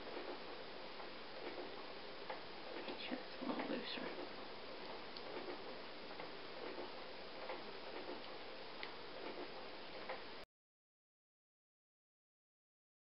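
Faint, irregular light clicks of yarn loops being worked over the pegs of a plastic long loom, over a steady hiss, with a brief faint murmur of voice a few seconds in. The sound cuts off abruptly to silence about ten and a half seconds in.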